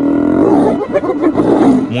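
A cornered lioness snarling: one loud, drawn-out growl lasting almost two seconds, a defensive threat at the hyenas pressing in on her.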